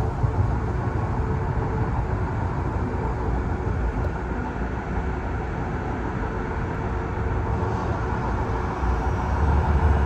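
Train in motion heard from inside the car: a steady rumble of wheels on the track with a faint steady hum, growing a little louder near the end.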